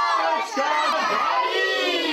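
A group of young children shouting together, many high voices overlapping, in two long shouts.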